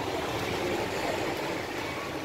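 Steady low background rumble and hiss with no distinct events, the ambient noise of a shop open to the street.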